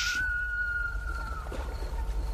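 A single high whistled note, held for about a second and a half and dipping slightly as it fades, over a steady low hum.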